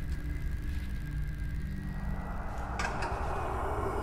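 A low, steady rumbling drone, with a rushing hiss that swells in about halfway through and grows louder toward the end.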